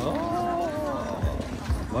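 A person's voice drawing out a long "oh" that rises and falls in pitch, followed by a few soft low thumps.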